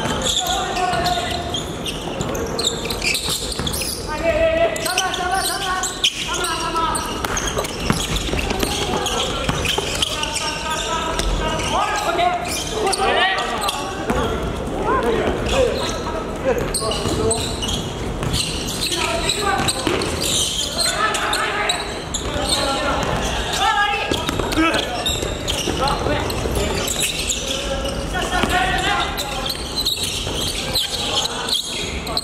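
Basketball players calling and shouting to one another, their voices echoing in a large gymnasium, with basketballs bouncing on the hardwood court.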